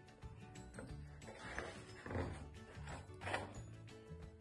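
Faint background music with soft steady tones, with a few soft rustles as a picture-book page is turned.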